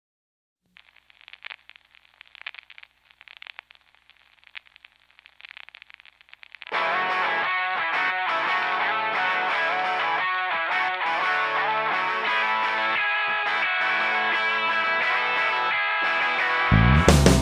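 Country-rock song intro on electric guitar: for the first six seconds or so a thin, filtered-sounding guitar, then the full-range distorted guitar riff comes in and carries on steadily.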